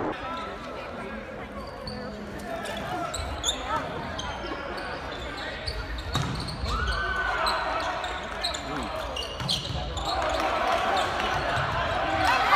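Volleyball match sound in a large, echoing gym: players' and spectators' voices blend into a steady background, with a few sharp volleyball hits spread through it.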